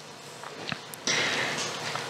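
A few faint mouth clicks, then a man drawing a breath in through his nose for nearly a second, about a second in, in the pause between spoken sentences.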